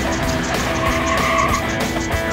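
Background music with a steady beat, laid over dubbed car sound effects: an engine running and tyres squealing, with the squeal about halfway through.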